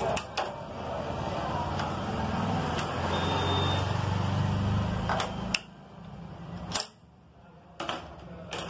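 A few sharp metallic clicks and taps from hand tools on a motorcycle's centre-stand fittings, over a steady low rumble that drops away about five and a half seconds in.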